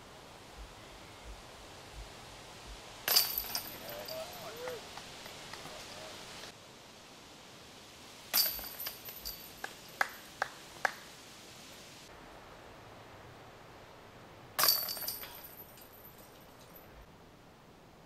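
Disc golf putts striking the hanging chains of a metal basket three times, each a sharp metallic clash followed by a brief jangling rattle as the chains swing and the disc drops in; a few lighter clinks follow the second hit.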